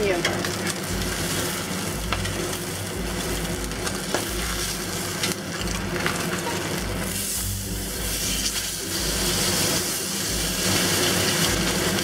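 Salmon fillet sizzling steadily in hot oil in a cast iron pan while it is flipped with a fish spatula; the sizzle grows a little louder near the end.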